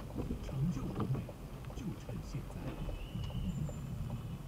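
Speech: a low voice talking inside the car, over a steady low hum of engine and road.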